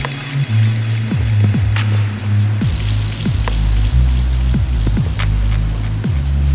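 Music with deep, sustained bass notes and booming kick drums that drop in pitch, hitting irregularly every half second or so.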